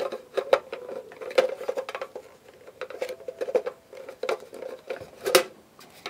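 Light plastic parts clicking and scraping as a tilt-swivel base is worked onto a small plastic diskette holder, in irregular clicks with a sharper click about five seconds in.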